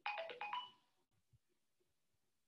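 A short electronic notification chime: a quick sequence of stepped tones, falling and then jumping back up, over within about a second.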